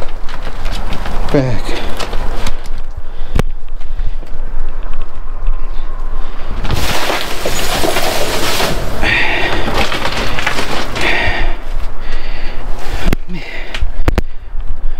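Plastic bags and crinkly snack packaging rustling and rattling as they are rummaged through and sorted, with a louder burst of crinkling about seven seconds in.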